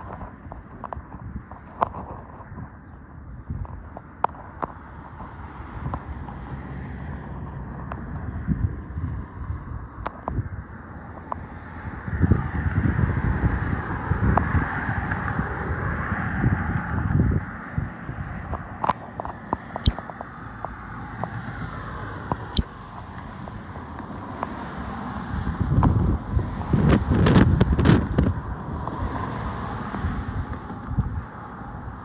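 Wind buffeting the microphone in irregular low gusts, with a traffic-like hum swelling for a few seconds near the middle.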